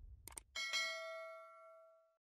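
Subscribe-button animation sound effect: a quick double mouse click, then a bright notification-bell ding that rings on and fades away over about a second.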